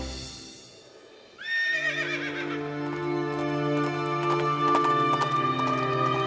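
Music fades out, then about a second and a half in a horse whinnies: a sharp rising call that wavers as it falls away. Sustained music follows, with the clip-clop of hooves near the end.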